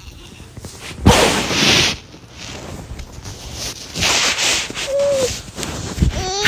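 Rubbing and rustling of fabric against a phone's microphone in two noisy bursts, one about a second in and one around four seconds, with a brief high squeak near five seconds.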